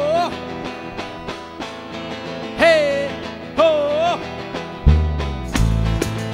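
Live southern Italian folk band playing an instrumental passage: strummed guitar and a fast, steady rhythm of hand percussion, with a lead line of short notes that slide in pitch. About five seconds in, a heavy bass line comes in and the sound fills out.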